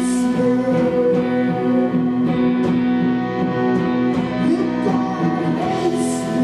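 A live rock band plays an instrumental passage: electric guitar, electric bass and bowed violin over drums, with a cymbal crash at the start and another near the end.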